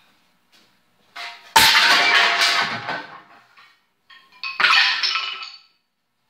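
Old shovels and other garden tools thrown down onto a concrete floor: a long clattering crash of metal blades and wooden handles about a second and a half in, then a second, shorter clang with ringing metal about four and a half seconds in.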